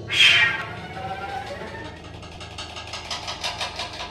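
Contemporary chamber music for piano, clarinet and percussion: a loud struck accent just after the start that rings away, a sliding pitched tone, then a run of fast repeated strokes that quickens toward the end.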